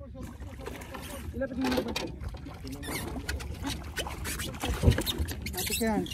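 A kingfish splashing and thrashing in the water at the boat's side as it is gaffed, with irregular knocks and one louder thump near the end, over a steady low rumble.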